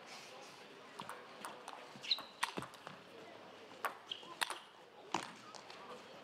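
Table tennis rally: the celluloid ball struck by rubber-faced paddles and bouncing on the table, a series of sharp, unevenly spaced clicks. Two brief high squeaks are also heard.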